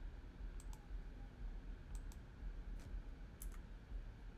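Several faint, sharp clicks at irregular intervals over a low, steady room rumble.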